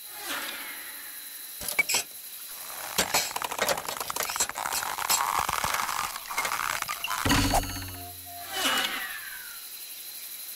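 Sound effects for an animated beetle: a run of small clicks and knocks, a low buzzing hum about seven seconds in, and a falling whistle near the end.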